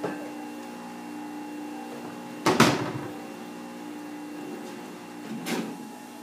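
A cupboard door banging shut about two and a half seconds in, then a lighter knock near the end, over a steady hum.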